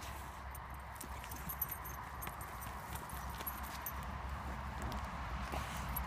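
A small dog digging into a mouse hole: a steady run of quick scratches as its paws and snout work through soil and dry grass stems, over a low rumble.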